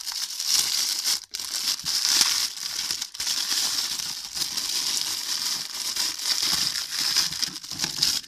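Thin clear plastic bag crinkling and rustling continuously as it is handled and pulled off small plastic compacts, with two brief pauses, about a second in and about three seconds in.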